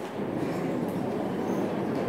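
Steady background noise of a lecture room: an even, dense rushing noise with no clear words.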